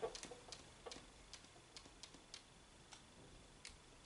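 Faint, irregular ticks and short scratches of a marker tip on a whiteboard as words are written, about two a second, over near silence.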